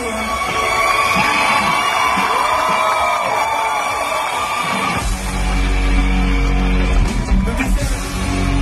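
Live concert music recorded from the crowd, with audience shouting and cheering over it. For the first five seconds the sound is thin with little bass; about five seconds in, a heavy bass-driven full band sound comes in suddenly.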